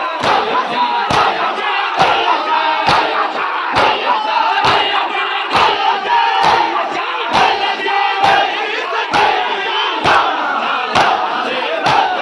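Crowd of men doing matam, striking their bare chests in unison with open hands, about one strike a second, while many voices chant and call out the noha.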